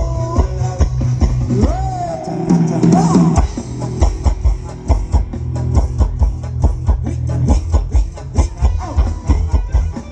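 Live Thai ram wong dance band music at full volume: a steady drum-kit beat over bass and guitar, with a sliding melody line a couple of seconds in.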